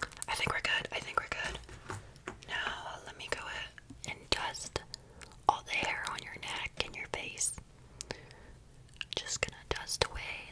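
A woman whispering close to the microphone in short phrases with brief pauses, punctuated by small sharp clicks and taps.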